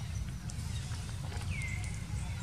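Steady low rumble with a few short, high-pitched animal calls; the clearest comes about one and a half seconds in, dropping in pitch and then holding.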